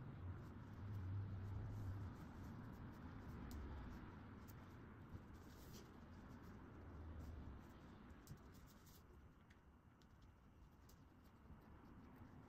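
Faint rustling and scraping of canvas fabric being handled and pinned together, with a few small clicks, fading toward the end.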